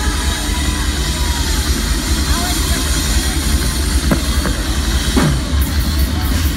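Live concert sound between songs: a steady deep bass rumble from the stage sound system under crowd voices. Near the end a rhythmic ticking starts, about four ticks a second, as the drums come in.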